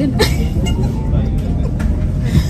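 Steady low rumble of a Gornergrat Railway train carriage running, heard from inside the carriage, with passengers talking in the background.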